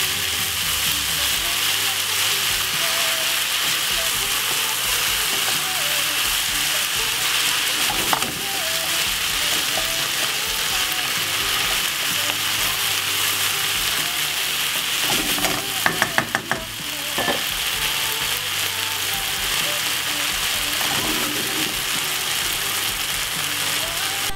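Ackee and vegetables sizzling steadily in a hot non-stick wok as they are stir-fried with a wooden spoon, with a brief run of knocks about two-thirds of the way through.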